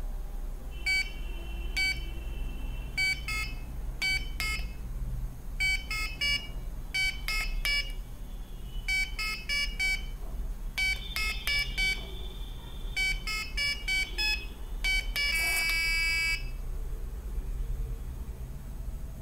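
Small buzzer of an Arduino memory game sounding short electronic beeps, one with each LED flash of the sequence and each button press, singly and in quick runs. A held tone of about a second and a half comes midway, and a louder, denser tone of about a second near the end.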